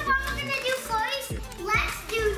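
Voices of a woman and children talking over background music.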